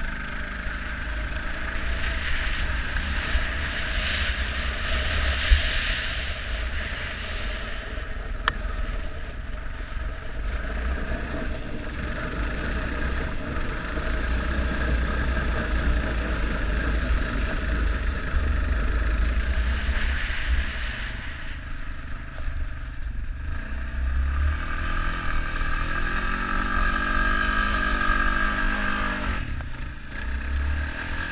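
ATV engine running while riding, with wind rumbling on the microphone; in the last few seconds the engine note climbs steadily as it speeds up.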